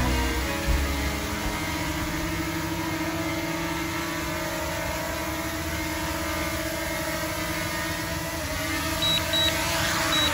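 DJI Mini 2 quadcopter's propellers humming steadily as it hovers low and comes down to land, with short high beeps near the end and the pitch starting to fall as the motors spin down. The tail of a country song fades out in the first second.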